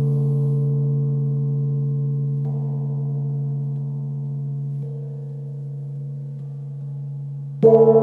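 A gong ringing and slowly dying away, a deep steady hum with higher overtones above it. Near the end it is struck again, and the new stroke rings out louder with a wavering pulse.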